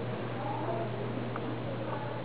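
Faint, high whimpering of stifled crying in short wavering breaths, over a steady electrical hum from the sound system.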